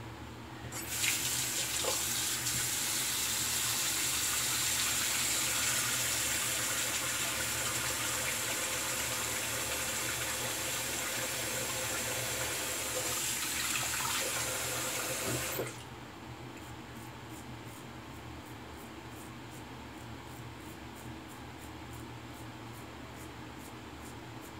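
Bathroom sink tap running, with water pouring into the basin. It is turned on about a second in and shut off suddenly about fifteen seconds later.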